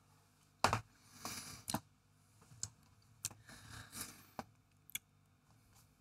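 Faint mouth sounds of someone savouring a sip of bourbon: about five sharp lip smacks and tongue clicks, and two soft breathy exhales.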